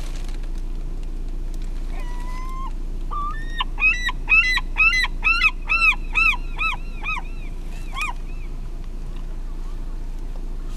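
A bird calling, first once and then in a quick run of about a dozen short arched notes, two to three a second, over a steady low rumble.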